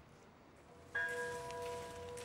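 A bell struck once just under a second in, then ringing on with a clear, steady tone.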